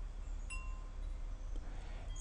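A single light metallic chime struck about half a second in, ringing briefly with a few high tones over a low steady hum.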